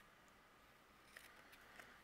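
Faint snips of small craft scissors trimming excess paper from the edge of a thin gold frame: a few short, quiet clicks in the second half.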